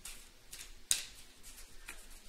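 A deck of oracle cards being shuffled by hand: several short swishes and snaps of the cards, the sharpest about a second in.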